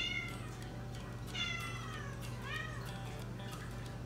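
A house cat meowing three times in short calls, each sliding down in pitch, begging to be fed at feeding time.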